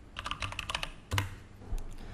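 Computer keyboard keys clicking as a short word is typed, a handful of separate keystrokes, with a sharper click about a second in.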